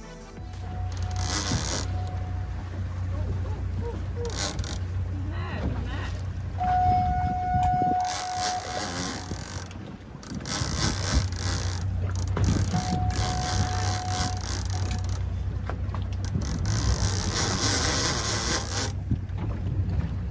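Wind buffeting the microphone over a steady low rumble, with the mechanical ratcheting of a heavy conventional fishing reel being cranked against a big fish that pulls hard on the rod.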